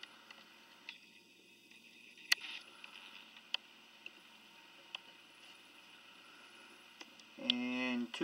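Quiet room tone broken by a few scattered sharp clicks, the loudest a little over two seconds in; a man starts speaking near the end.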